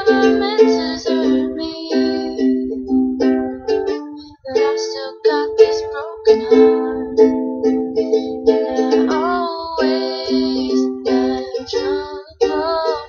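Ukulele strummed in rhythmic chords, with a woman's voice singing over it at times.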